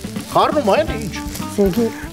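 Food sizzling in a frying pan as it is stirred, under background music.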